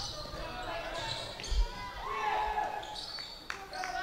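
Basketball being dribbled on a hardwood gym court, with scattered thuds and faint voices echoing in the large hall.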